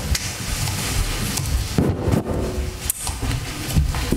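Rustling and crackling close to a microphone, with soft knocks scattered through it, like clothing or hands rubbing on the microphone.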